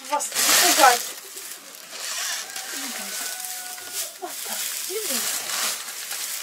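Dry straw rustling and crackling as it is shaken out of a woven plastic sack and spread by hand over a pen floor for fresh bedding. It is loudest in the first second.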